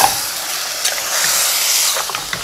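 Chicken pieces sizzling as they fry in a stainless steel pot while being stirred with a spoon: a steady hiss that grows brighter about halfway through, with a light scrape of the spoon at the start.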